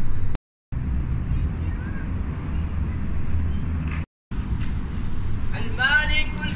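Steady low rumble of outdoor background noise, broken by two short gaps of complete silence, one near the start and one about four seconds in. A man's voice begins near the end.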